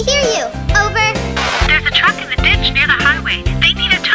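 Children's cartoon backing music with a steady, repeating bass beat, with high-pitched cartoon voices over it.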